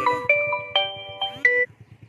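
A short electronic melody of steady held notes sounding together and changing pitch in steps, stopping suddenly about one and a half seconds in.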